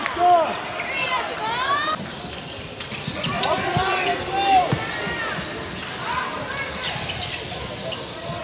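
Basketball bouncing on a hardwood gym floor during a fast break, with sneakers squeaking in short chirps several times, over the din of players and spectators in the gym.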